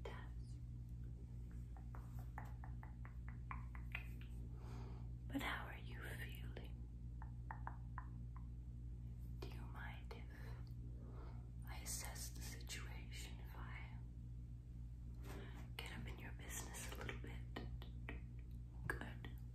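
A woman whispering softly, in breathy phrases with pauses between them. About two seconds in there is a quick run of small clicks, roughly ten of them.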